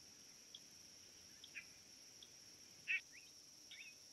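Scattered short bird chirps and calls, the loudest about three seconds in and followed by a few quick gliding notes, over a steady high drone of insects.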